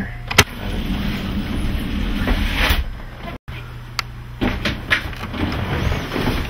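A single sharp clack as the wet bar's refrigerator door is shut, over a steady low mechanical hum. After a cut, a few lighter knocks.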